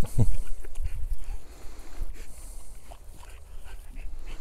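An American bully puppy gives one short whine that slides down in pitch right at the start, against a steady low rumble.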